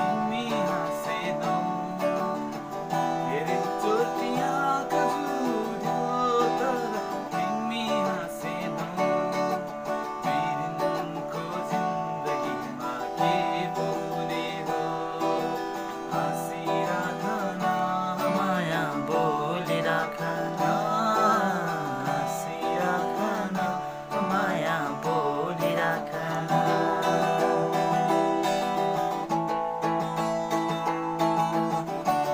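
A man singing while strumming chords on a guitar.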